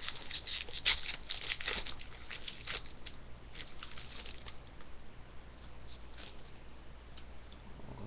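Hockey card pack wrapper being torn open and crinkled, then the cards slid out and handled. Dense crackling fills the first three seconds, then thins to scattered rustles and clicks.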